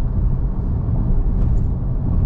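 Steady low rumble of a car driving at speed: tyre, road and engine noise, with a faint brief tick about one and a half seconds in.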